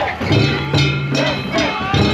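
Festival accompaniment of rapid metallic gong or bell strikes, about four a second, with men's shouts over it from the crew carrying the boat float.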